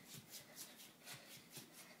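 Near silence: room tone with faint, even ticking about four or five times a second.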